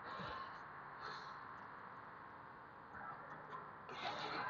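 Faint, steady background noise with a few soft, brief bumps.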